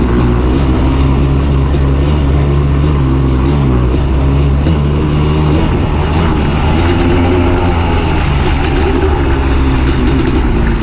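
Honda CR500 two-stroke single-cylinder motocross engine running hard close to the microphone, its pitch rising and falling as the throttle is worked over the ride.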